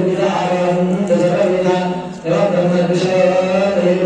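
Hindu priest chanting Sanskrit mantras into a microphone in a steady, held monotone, with a brief break for breath a little past halfway.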